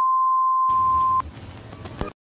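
A steady, single-pitch test-tone beep of the kind played with TV colour bars, cutting off suddenly about a second in. A hiss of TV-style static comes in just before the beep stops and runs on after it, part of a glitch transition effect.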